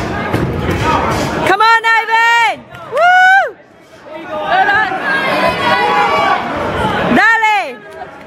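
Boxing spectators' crowd chatter, broken by three loud, drawn-out, high-pitched shouts from someone close by: about a second and a half in, again at three seconds, and near the end.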